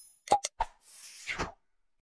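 Sound effects of an animated subscribe/share graphic. Two short clicks come about a quarter of a second apart, the first the loudest. A swish then follows about a second in and ends in a thump.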